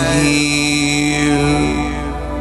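Male singer holding a long sung note over acoustic guitar accompaniment; the note ends shortly before the close.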